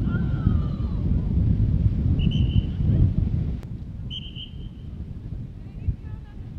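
Wind buffeting the microphone, then two short blasts of a referee's whistle, the first about two seconds in and the second about four seconds in.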